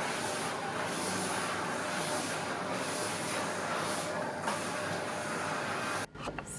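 Steady, even background noise with no clear voices, which cuts in and cuts out abruptly.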